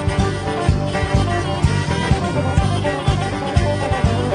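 Live country band playing an instrumental passage with no singing: acoustic and electric guitars and bass over drums keeping a steady beat.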